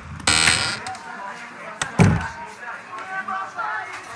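Sound effects of a tavern door: a short bright jangle just after the start as it opens, a heavy thump about two seconds in as it shuts, then faint murmur of voices.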